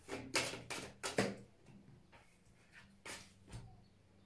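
A deck of cards being shuffled by hand. There are several quick card snaps and rustles in the first second or so, then two more about three seconds in.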